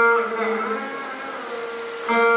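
Veena note ringing on after a pluck, its pitch bent up and down in a gliding Carnatic ornament (gamaka) by deflecting the string, then fading over a steady drone tone.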